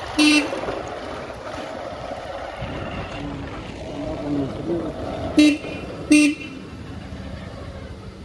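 A vehicle horn giving three short toots on one steady pitch: one just after the start, then two close together at about five and a half and six seconds.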